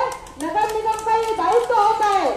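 A woman shouting protest slogans into a microphone in long drawn-out calls, with hand-clapping.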